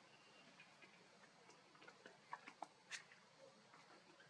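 Near silence, broken by a few faint, sharp clicks a little past halfway, the third the loudest.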